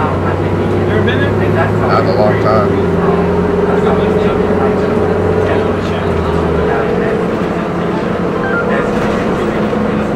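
A moving bus heard from inside the cabin: the engine and drivetrain hum steadily, with passengers' voices in the background.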